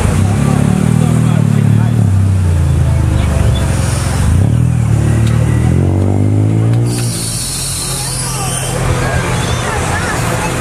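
Car engines running at low speed as cars roll slowly past, a deep steady engine note that eases off about seven seconds in. People talk in the background.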